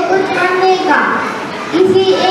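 Only speech: a young boy speaking into a microphone in a high child's voice.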